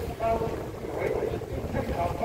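Wind buffeting the microphone in a low, uneven rumble, with a short snatch of a man's chanting voice just after the start.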